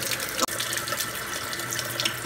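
Kitchen tap running a steady stream of water into a stainless steel sink, with one short click about half a second in.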